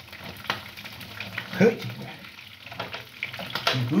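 Wooden cooking stick stirring and pressing stiff ugali (maize porridge) in an aluminium pot, with a few scraping, knocking strokes against the pot.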